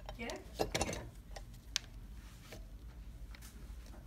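Light clicks and handling noise as nylon webbing and metal parts are set into a hand-operated snap press, ready for punching a hole, with one sharper click almost two seconds in.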